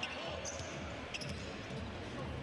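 Basketball dribbled on a hardwood court, a few sharp bounces over the steady murmur of the arena crowd.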